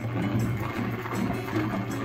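Salad spinner whirring as its lid knob is cranked round, spinning the water off washed salad leaves, over background music.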